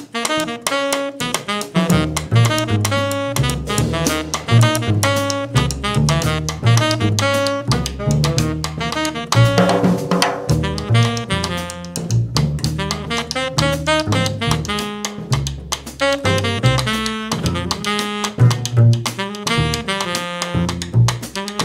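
Jazz trio playing: tenor saxophone carrying the melody over upright bass and a drum kit. The bass line comes in about two seconds in.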